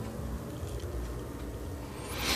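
Quiet room tone: a faint steady hiss with a low hum underneath, and no distinct event.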